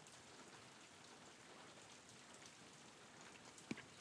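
Very faint, steady rain ambience, close to silence, with a soft click near the end.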